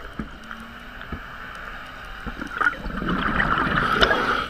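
Scuba diver breathing through a regulator underwater: a quiet stretch with faint clicks, then a loud rush of air and bubbling that starts about two and a half seconds in.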